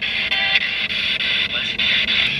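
Spirit box radio scanner sweeping through stations: a steady hiss of static, with brief broken fragments of broadcast sound about half a second in.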